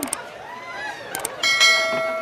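A few light clinks, then one sharp metallic strike about one and a half seconds in that rings on like a small bell: metal kitchenware knocked against a stainless steel cooking pot.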